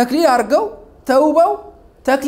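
Speech only: a man talking in two short phrases with a brief pause between them.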